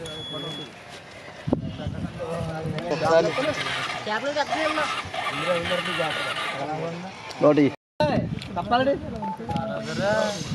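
People talking, with voices through most of the stretch and a brief total dropout about eight seconds in. A short high beep sounds right at the start.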